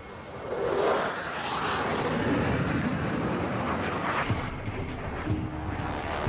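Fighter jet engine noise during a steam-catapult launch off an aircraft carrier deck. It swells about a second in and then holds fairly steady.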